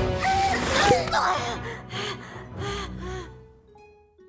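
An animated character's loud gasp, then a run of short breathy gasps about three a second, over background music that thins to a few held notes near the end.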